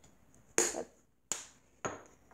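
Three sharp taps, the first about half a second in, the next about three-quarters of a second later and the last half a second after that, each dying away quickly.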